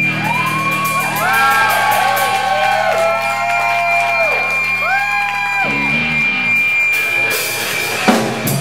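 Live rock band playing a loud, sprawling instrumental passage: high notes that swell, bend up and slide back down over held low bass notes, with a steady high ringing tone throughout. The low notes drop out just before the last two seconds.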